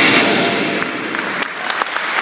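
A crowd of people applauding, the clapping breaking out suddenly and loudest at first, then going on steadily.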